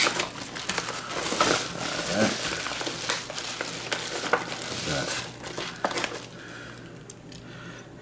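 Padded paper mailer envelope crinkling and rustling as it is handled and a die-cast toy car is pulled out of it. The crinkling goes on for about six seconds, then becomes quieter.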